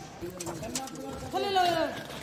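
People's voices calling out, two short drawn-out calls with no clear words, the second one louder.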